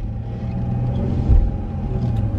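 Car cabin noise while driving: a steady low rumble of engine and road with a faint steady hum, and one brief low thump about a second and a half in.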